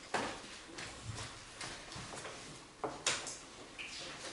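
Scattered clicks and knocks over a faint rustle as papers and small objects are handled at tables, about six in all, the loudest about three seconds in.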